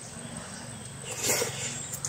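Close-up eating sounds: a mouthful of rice and sponge-gourd soup being chewed, with a louder wet mouth noise about two-thirds of the way in. A steady low hum runs underneath.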